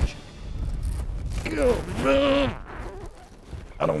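A man's single drawn-out vocal exclamation, rising then falling in pitch, as an angler hooks a fish, over a low rumble; he starts talking near the end.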